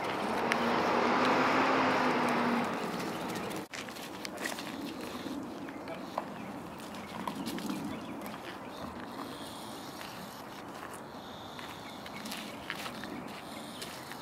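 Outdoor background noise. A rushing noise with a low steady hum swells and fades over the first three seconds. It cuts off abruptly, and a quieter background with scattered light clicks follows.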